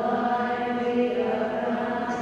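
Slow church hymn sung in long held notes, the pitch stepping to a new note about a second in.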